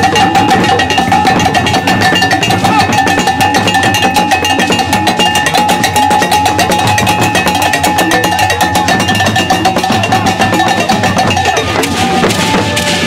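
Dagomba traditional percussion music: drums and gourd rattles played fast and dense, with a steady ringing tone held above the beats.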